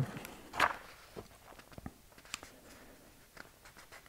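Faint handling of a picture book: a few soft, scattered clicks and rustles as a page is turned, after a short breathy sound about half a second in.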